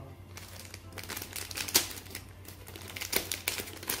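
Thin clear plastic packet being handled and pulled open, crinkling with irregular crackles, a few of them louder.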